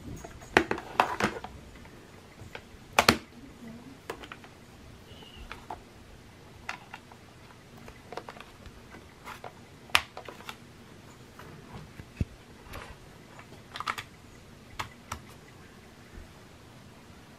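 Irregular clicks and light knocks as a portable external hard drive and its USB cable are handled, plugged in and set down on a table. The loudest cluster comes about a second in, with sharper single clicks around three seconds and ten seconds.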